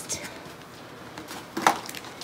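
Handling of a paper-wrapped gift box: faint rustling of the wrapping paper, with one brief, louder noise about one and a half seconds in.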